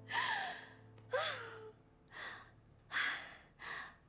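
A woman sighing with relief after a success: two voiced sighs that fall in pitch, then three short breathy exhalations.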